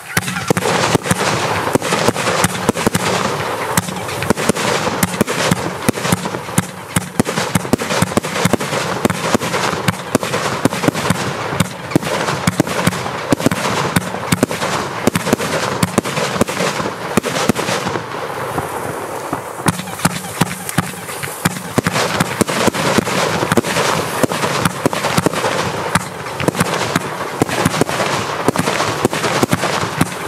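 Ziegelstein by Vivid Pyrotechnics, a 120-shot, 30 mm F3 fan compound firework, firing continuously: a rapid, unbroken run of tube launches and bursts with no pauses.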